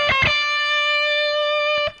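Les Paul-style electric guitar finishing a quick run of picked, hammered-on and pulled-off notes on the B and high E strings at frets 10 and 13, then one high note held ringing for about a second and a half before being cut off just before the end.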